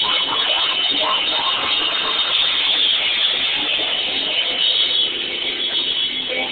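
Grindcore band playing flat out, drum kit and distorted guitars merged into a dense, steady wall of noise with little to pick apart.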